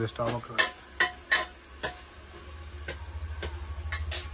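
Chicken pieces being washed and turned by hand in a bowl of water: a series of short wet knocks and squelches, about six in all. A low steady hum builds from about halfway.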